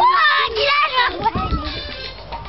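Young girls' high voices shouting and squealing without clear words as they play, pitch sliding up and down, over music playing in the background.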